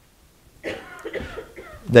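A person coughing softly, starting about half a second in.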